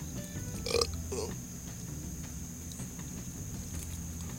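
Two short throaty vocal sounds from a man, close together about a second in, over a steady low hum and faint music.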